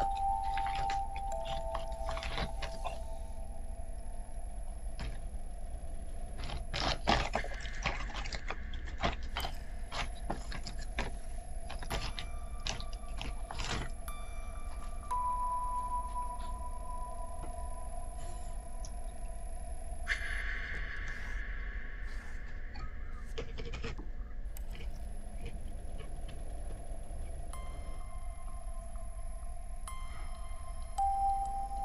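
Film soundtrack from a horror movie's opening sequence: a sparse score of held tones with scattered clicks and ticks.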